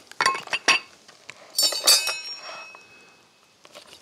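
A few sharp knocks from butchering work, then about one and a half seconds in a metal utensil clinks against a hard surface and rings on briefly.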